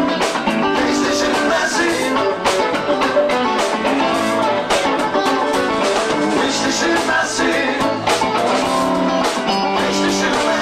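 A live rock-blues band playing, with electric guitar and drums, and a male voice singing.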